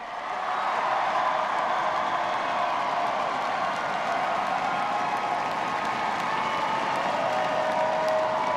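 A large crowd applauding and cheering steadily, many voices shouting and whooping over the clapping.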